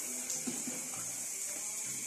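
A steady high hiss, with short held musical notes over it and a brief knock about half a second in.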